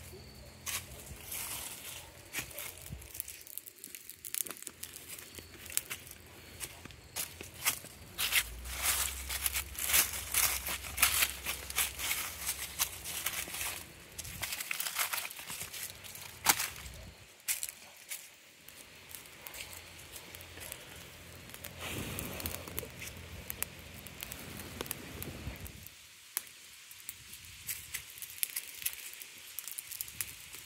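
Footsteps crunching through dry leaf litter and twigs, an irregular run of crackles and snaps, with a low rumble of handling or wind on the microphone from about 8 to 14 seconds in.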